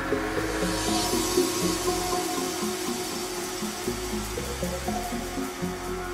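Live ambient electronic music played on hardware synthesizers and a sampler (Behringer Crave, Elektron Model:Cycles, Korg Volca Sample 2). A low bass line and a repeating figure of short synth notes run over held pad tones. A wash of hissy noise swells in at the start and fades away over the next few seconds.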